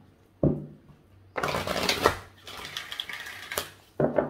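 A deck of oracle cards being shuffled by hand: a short thump about half a second in, then about two seconds of cards sliding and rustling against each other, ending in a sharp tap.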